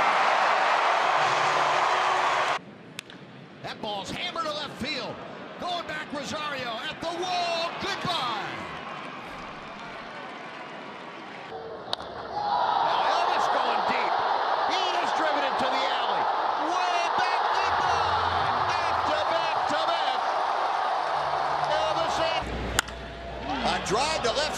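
Ballpark crowd cheering loudly after a home run, cut off abruptly about two and a half seconds in. A quieter stretch of crowd murmur and voices follows. A sharp crack of bat on ball about twelve seconds in sets off another long loud crowd cheer, which is cut off near the end.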